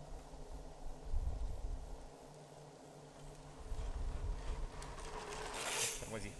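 Quiet outdoor background with an intermittent low rumble and a short hiss-like noise near the end.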